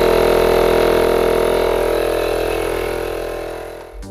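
Makita MP001G 40V cordless tyre inflator's compressor running steadily under load as it pumps up a van tyre toward its 51 psi setting, fading out near the end.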